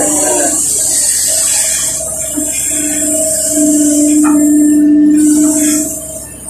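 Kobelco SK140 excavator working under load, heard from the cab: its Mitsubishi D04FR diesel and hydraulic pumps give a steady whine over a high hiss as the arm and bucket move. The whine grows strongest about four seconds in and falls away near the end.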